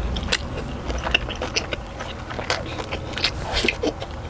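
Close-miked chewing and lip smacking of a mouthful of food, a string of irregular clicks.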